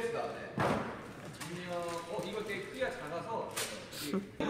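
Two sharp thuds, one about half a second in and one near the end, among voices from a playing video clip.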